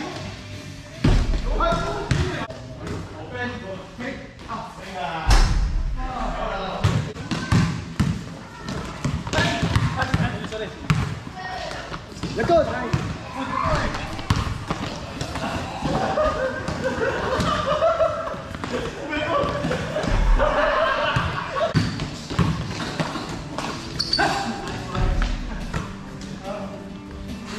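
Basketball bouncing on a gym court floor as it is dribbled and passed in play, mixed with several players' voices calling out across a large hall.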